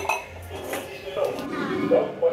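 A few sharp metallic clinks and knocks from handling a steel LPG gas cylinder and its regulator, with faint music or humming underneath.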